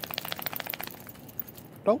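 A small terrier's claws scrabbling on the floor, a quick run of light scratchy clicks that fades out about a second in.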